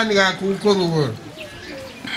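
A man's voice speaking with drawn-out vowels, the pitch falling at the end of a phrase about a second in, then quieter.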